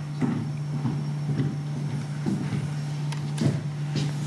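A steady low hum, with faint scattered knocks and rustles over it.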